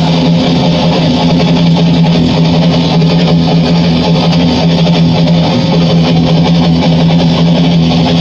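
Electric guitar and bass guitar playing heavy-metal rock music with the drums dropped out, held notes ringing steadily. The drums come back in just after.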